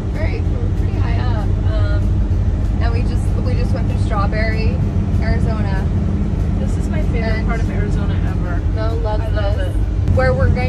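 Steady low road and engine rumble inside a moving vehicle's cab climbing a mountain highway, with indistinct voices heard over it throughout.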